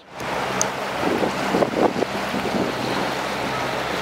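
Motorboat engine running with a steady low hum, under water rushing along the hull and wind buffeting the microphone.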